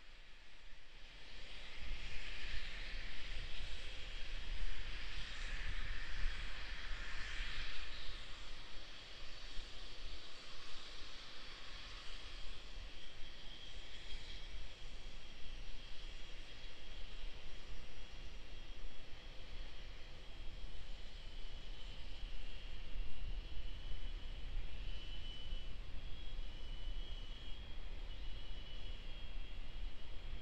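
Steady hissing rush of a Starship prototype venting propellant vapour on its launch stand as propellant loading finishes in the final minutes of countdown, with a low rumble underneath. The hiss is strongest for the first several seconds, then eases.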